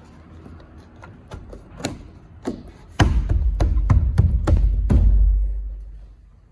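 A 4-inch rubber gasket being pushed by hand into a drilled hole in a plastic rainwater tank's wall: a few scattered taps and knocks, then from about halfway a run of louder thumps over a low rumble that fades out near the end.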